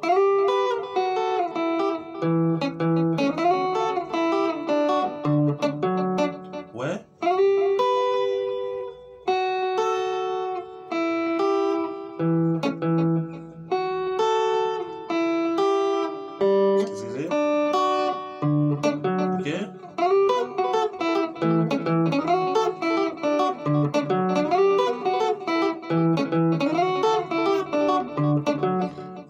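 Electric guitar picking a kompa-style accompaniment groove in B major: repeating phrases of single notes and two-note chords taken from the harmonised scale, with a few quick slides along the neck.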